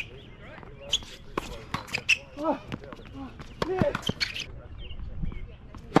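Tennis rally on a hard court: a series of sharp racket-on-ball strikes and ball bounces, with a player grunting "Ah!" on a shot about two and a half seconds in and again near four seconds.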